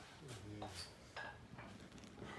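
Faint voices with a few light, sharp metallic clinks.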